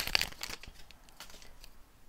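Foil wrapper of a Score football card pack crinkling as it is pulled open around the stack of cards. The crackle is loudest in the first half second and then thins out to faint rustles.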